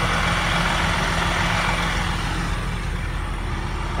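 Bus diesel engine idling steadily, with an even hiss over the low engine hum.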